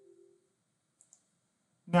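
The tail of a single chime-like electronic note dying away, then two quick mouse clicks about a second in.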